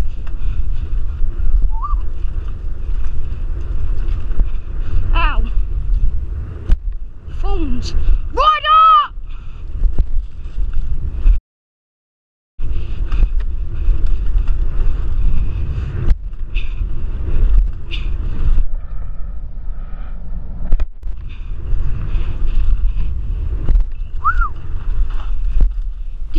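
Mountain bike ridden fast down a dirt trail: wind rushing on the microphone and tyres rumbling and clattering over the ground. A few brief whoops come through, the loudest about nine seconds in, and the sound cuts out completely for about a second midway.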